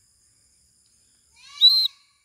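A short, loud, shrill blast on a small survival whistle attached to a knife, sounding once near the end and lasting about half a second.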